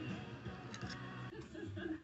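A couple of light metal clicks from a pick prying at the seal shield of a timing belt tensioner bearing, over faint background music.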